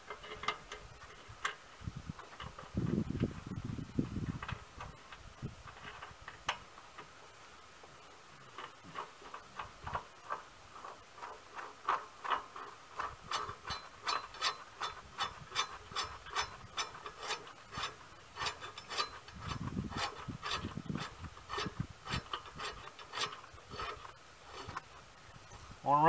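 Faint light metallic clicks from the mower blade and its mounting bolt being worked onto the star-shaped spindle under the deck. They are sparse at first and come several a second in the second half, with two brief low rumbles of handling.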